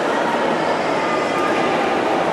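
Crowd noise echoing in a swimming pool hall during a race: many voices blurring into a steady din, with a few shouts standing out.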